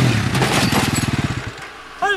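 Quad (ATV) engine running with a rapid, rough, even pulse, fading out about a second and a half in.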